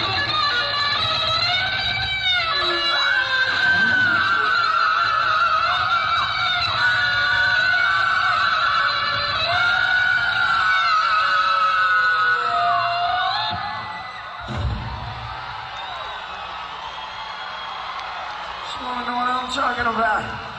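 Live rock concert recording: a distorted electric guitar lead with string bends and wide vibrato trading phrases back and forth with a male lead singer's voice. It drops to a quieter passage about 14 seconds in, with a single low thump, and the voice returns near the end.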